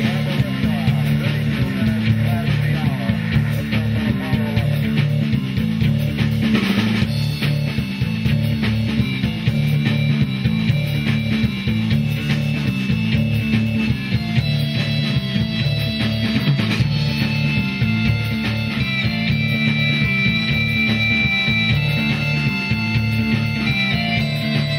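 Live rock band playing an instrumental: drum kit, electric guitar and keyboards over a repeating bass line, with sustained high notes coming in about halfway.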